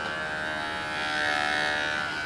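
Electric hair clippers running with a steady buzz, a little louder in the second half.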